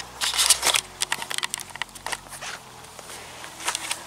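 Handling noise from a handheld camera being swung round: rustling and crackling, thickest in the first second, then scattered clicks.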